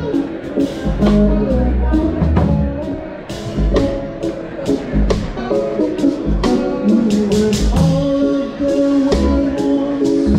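A live band playing, with a drum kit keeping a steady beat of regular strikes over sustained instrument notes and a heavy bass line.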